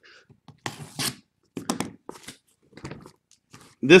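A few short rustles and clicks from a sealed sports card case and its boxes being handled and opened.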